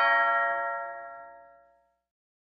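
Two-note ding-dong doorbell chime ringing out, the second note fading away to nothing near the end.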